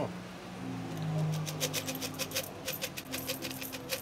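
Pennies poured from a cup into cupped hands: a quick run of many small coin clinks starting about a second and a half in, over background music.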